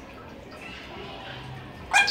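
Quiet room sound with faint small sounds, then right at the end a loud, clear call that slides steeply down in pitch: a call from an Alexandrine parakeet.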